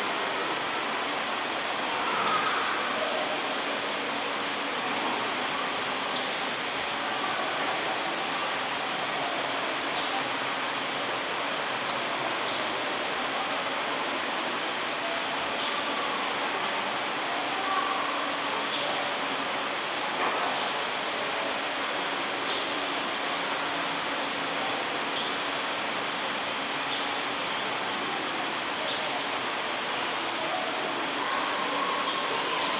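Steady background hiss in a large room, with a few faint, indistinct short sounds.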